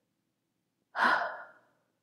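A woman sighs once about a second in, a breathy exhale that fades away over about half a second.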